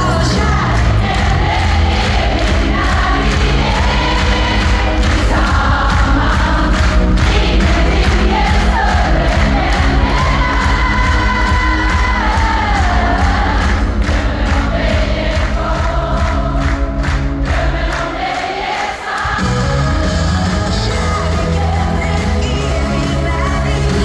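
A live pop-rock song: singing over a full band, recorded from the audience. Near the end the bass drops out for about a second, then the band comes back in.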